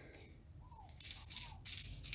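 Light metallic clinks and scraping from the metal tip and threaded nut of a Handskit soldering iron being worked by hand as the tip is removed. The clinks come in a short cluster starting about a second in, with a thin ringing.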